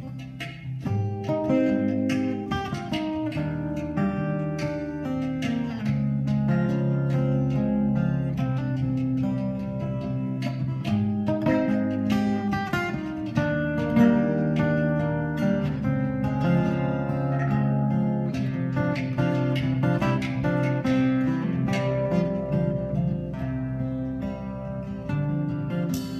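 Acoustic guitar playing a quick run of plucked notes, accompanied by light hand percussion.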